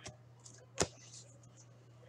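Quiet handling of trading cards at a table, with one sharp click a little under a second in, over a faint steady low hum.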